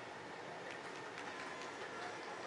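Faint, even background noise with a few soft, light clicks in the middle.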